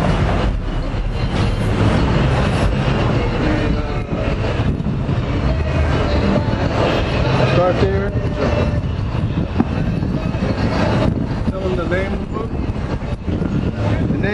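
Steady low rumble of passing street traffic, with faint voices now and then.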